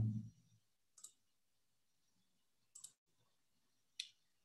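Near silence broken by a few faint computer mouse clicks: one about a second in, a quick pair near three seconds, and another at the end.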